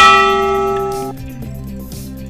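A bell-like chime sound effect, struck once and ringing as it fades, cut off suddenly about a second in, over steady background music. It marks the last arrow of a number-matching exercise being drawn.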